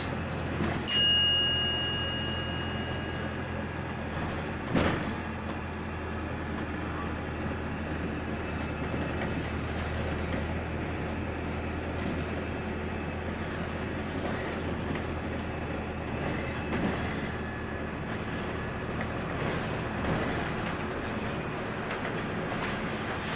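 Inside a moving double-decker bus: a steady low engine and road drone. A single bright electronic chime sounds about a second in and dies away. A short knock comes at about five seconds.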